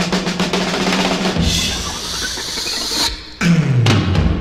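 Psychedelic rock recording: a rapid drum roll over a held bass note gives way to a wash of cymbals. The music drops away briefly about three seconds in, then comes back with a loud low note sliding down in pitch.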